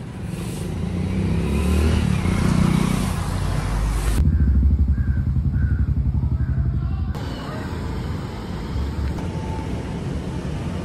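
Street traffic: a motor vehicle's engine running close by, louder over the first couple of seconds, heard across several abrupt cuts, with a rapid even low pulsing in the middle section.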